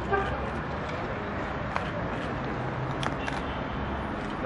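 Steady background noise of a crowded hall with indistinct voices. A short pitched toot comes right at the start, and a few sharp clicks follow about two and three seconds in.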